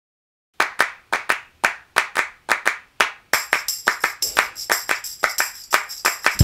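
The opening of an RnB-funk track: a rhythmic hand-clap beat starts about half a second in, about four claps a second, and a jingling tambourine-like shimmer joins the claps about halfway through.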